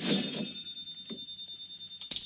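Mechanical cash register's bell ringing as a sale is rung up: one high, clear ring held for about two seconds.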